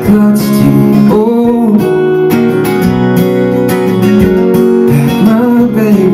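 A man singing while strumming chords on a steel-string acoustic guitar, performed live; the voice is heard in phrases, about a second in and again near the end, over steady strumming.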